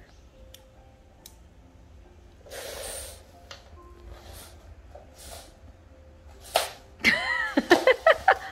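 Faint, small clicks of neodymium magnets snapping onto the ends of an AAA battery. A breathy burst of noise comes a few seconds in. Near the end there is a sharp click and a child's wordless voice sounds.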